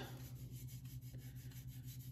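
Fingertips rubbing oil into the wooden stock of a Lee-Enfield rifle, a faint rubbing on oiled wood, working the finish into the grain. A low steady hum sits underneath.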